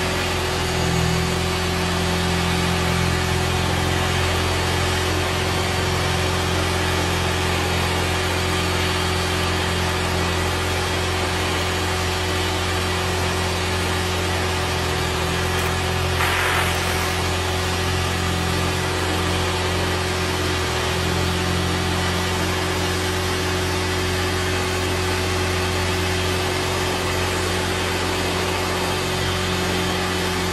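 Percussive massage gun motor running steadily while its head hammers a car's carpet floor mat, beating dirt loose, with a vacuum cleaner's steady suction hiss alongside. There is a brief brighter rush about halfway through.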